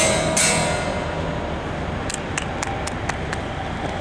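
Acoustic guitar's last two strummed chords of the song ringing out and fading, followed from about two seconds in by a run of short sharp taps, roughly four a second.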